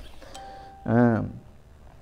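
A man's short voiced hum or hesitation sound about a second in, preceded by a faint steady tone lasting about half a second.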